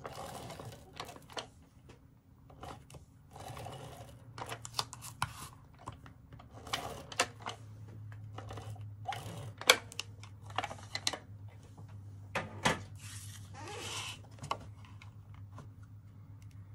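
Handheld adhesive tape runner laying glue tape onto cardstock in repeated short strokes, with sharp clicks between them, followed by card being handled and pressed down. A low steady hum comes in about halfway.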